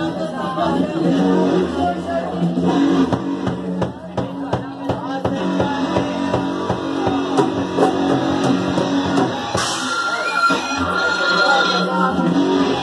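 A punk band's amplified electric guitar and bass hold ringing notes with scattered drum hits between songs, not playing a tune together. A high steady tone joins about ten seconds in.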